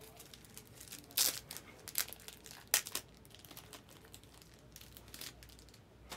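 Plastic wrapping crinkling, in a few short sharp bursts: the loudest comes a little over a second in and another near three seconds in.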